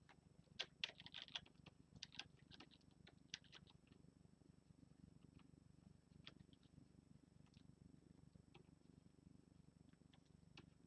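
Near silence: a faint steady low hum, with a cluster of light clicks and taps in the first few seconds and only a few scattered ticks after that, as of a stylus and keys being worked at a drawing desk.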